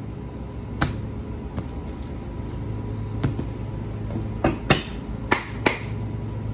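A tarot card deck is tapped and knocked against a cloth reading mat on a table, giving about six sharp knocks, most of them bunched in the second half. Under the knocks a lawn mower outside drones steadily.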